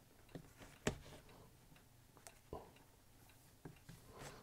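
Faint, scattered clicks and scratches of a marker pen writing on a drawing surface, a handful of short ticks over near silence.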